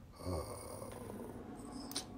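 A person's breathy vocal sound. A short voiced start trails off into breath.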